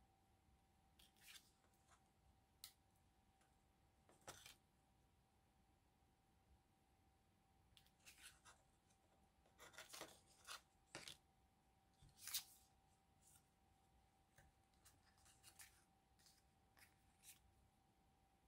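Faint, scattered rustles and small clicks of hands handling paper ephemera and yarn, with scissors snipping the yarn near the middle; overall close to silence.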